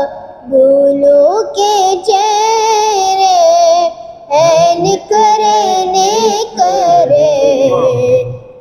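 A boy singing a naat, an Urdu devotional poem in praise of the Prophet, unaccompanied, in long wavering held notes. He pauses for breath about half a second in and again around four seconds.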